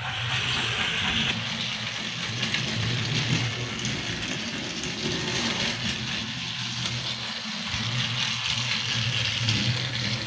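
Battery-powered TrackMaster toy trains running on plastic track: a steady small-motor and gearbox drone with the rattle of the wheels on the track.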